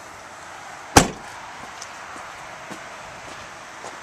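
The rear liftgate of a 2011 Chevrolet Traverse LT slammed shut once, a single sharp bang about a second in.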